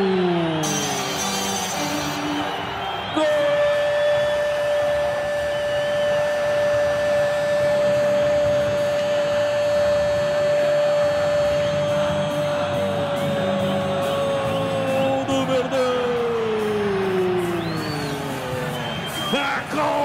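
Brazilian radio football commentator's long goal cry, one vowel held on a single high note for about twelve seconds and then sliding down in pitch, over stadium crowd noise.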